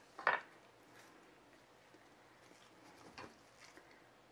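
Light handling knocks of small craft tools: one sharp clatter about a third of a second in, then a few faint clicks around three seconds, as metal tweezers and a plastic cup are handled on a wooden cutting board.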